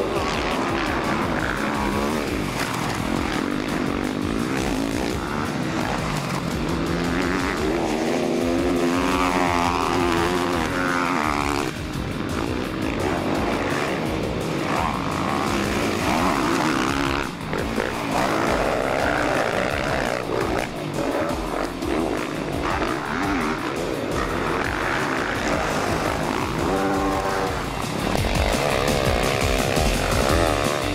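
Motocross bike engines revving up and down as the bikes race past, with music playing over them.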